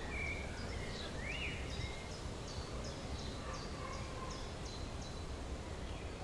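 Faint, high, bird-like chirps over a steady low rumble. The chirps quicken to a run of about three a second in the middle, then thin out. No orchestra or singing is heard.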